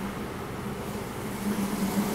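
Prawns and a pat of butter sizzling in a hot sauté pan: a steady frying hiss over a faint low hum.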